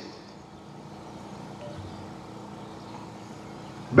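A pause in the speech: faint, steady background noise with a low hum running under it.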